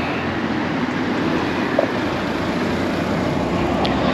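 Steady outdoor background noise: an even rush with no distinct events.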